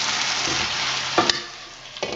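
Food sizzling in a frying pan on a gas burner while being stirred with a utensil. The sizzle fades during the second half.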